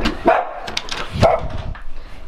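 A dog barking a few times in short, loud barks.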